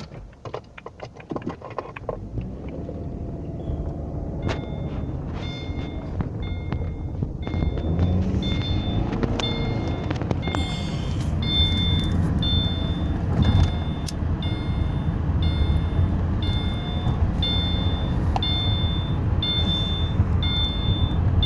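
Car running noise heard from inside the cabin: a low engine and road rumble that grows louder over the first several seconds as the car gathers speed. A short, high electronic beep repeats about once a second from about four seconds in.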